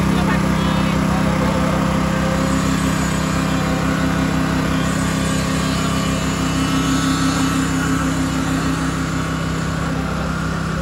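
An engine running steadily at a constant speed, a loud, even drone with a low hum that holds unchanged throughout.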